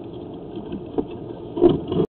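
Steady low engine-like hum, with a sharp click about a second in and a brief louder knock near the end as the sewer camera is moved.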